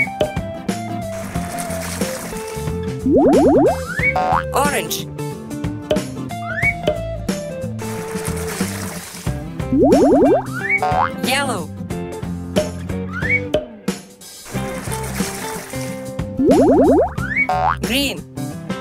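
Cheerful children's-cartoon background music with sound effects that repeat about every seven seconds: a hiss of spraying water from a garden hose, then a loud, quick rising sweep of tones.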